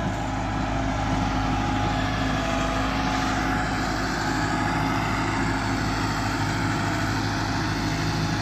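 Tractor's diesel engine running steadily as it pulls a laser-guided land leveler across the field, a continuous hum of several low tones.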